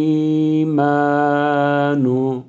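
A man reciting the Qur'anic words "wa wariṯa Sulaymān" in melodic tajweed chant, with long held notes and a short break about three quarters of a second in, the lisped tha and the sharp sin kept distinct.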